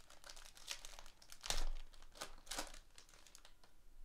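Foil trading-card pack being torn open and its wrapper crinkled, in several short, sharp rustles, the loudest about one and a half seconds in.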